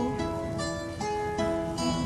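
Guitar accompaniment playing a brief instrumental passage between sung verses of an Azorean cantoria, plucked notes held and changing pitch a few times.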